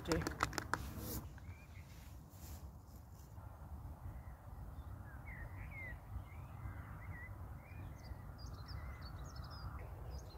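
A spoon scraping and rustling in a foil food pouch for about a second, then birds calling with short chirps over a steady low rumble.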